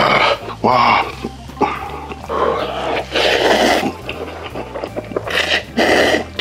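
A man's loud, throaty exclamations and exhales after chugging a bottle of beer, in several bursts, the longest about two and a half seconds in. Near the end, noodles being slurped.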